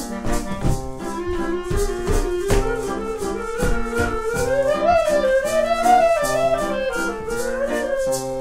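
Instrumental music from a small acoustic theatre band of clarinet, violin, guitar and piano: a single melody line winds up and down over a steady, evenly pulsed accompaniment.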